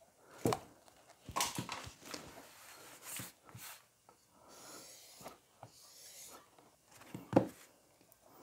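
A carbon steel whittling knife being handled and worked on a sharpening stone: quiet rubbing and short scrapes, with a few sharper knocks, one about half a second in, a couple around a second and a half, and one near the end.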